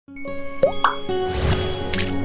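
Channel-intro jingle of sustained synth tones, with two quick rising pops a little over half a second in, a whoosh, and a bright ding just before it settles into held ambient notes.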